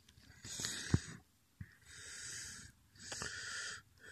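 A person breathing close to the microphone: three noisy breaths about a second apart, with a sharp click about a second in.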